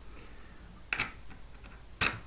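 Quiet room with a single small sharp click about a second in and a few fainter ticks.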